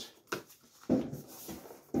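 Cardboard rubbing and scraping as the tight inner tray of a motor box is pushed out by hand. There is a short scrape about a second in that fades away.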